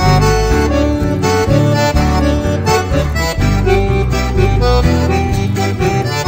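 Chamamé music: an accordion playing the melody over a steady, stepping bass accompaniment.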